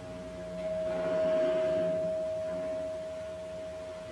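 A single steady high tone, held for several seconds. It swells a little about a second in and stops just before the end.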